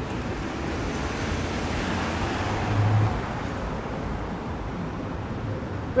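Road traffic noise: a car passes, swelling and fading about two to three seconds in over a steady hum of traffic.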